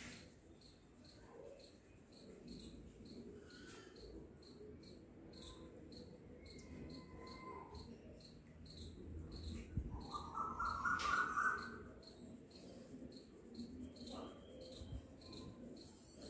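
A cricket chirping steadily in the background, about three short high chirps a second, over soft rustling of fingers working through damp hair. About ten seconds in, a louder trilling call lasts a second or so.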